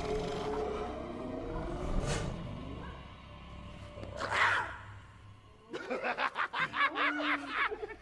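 Film soundtrack with tense orchestral score and lion growling, a short roar about four seconds in, then hyenas cackling with laughter from about six seconds in.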